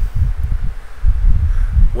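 A low, uneven rumble in the bass, with no speech.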